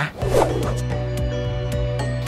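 A quick swoosh-like edit effect, then background music holding one steady chord, with a few light ticks near the end.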